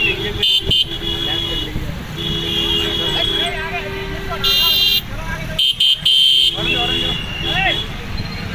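Vehicle horns honking in a string of toots about a second long, two of them louder near the middle, over the voices of people calling out.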